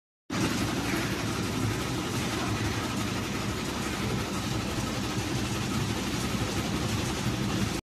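LB-160 automatic fresh-meat slicing machine running with its conveyor belt moving: a steady mechanical noise, heaviest in the low range. It cuts off suddenly just before the end.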